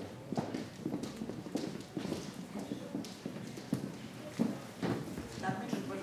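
Footsteps on a hard floor, irregular knocks about twice a second, over a low murmur of voices in a hall. A voice begins near the end.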